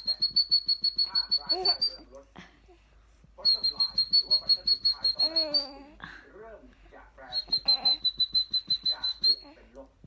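A baby chuckling in short giggles, answering three bursts of a high trilling whistle. Each whistle lasts about two seconds and pulses about eight times a second on one steady pitch.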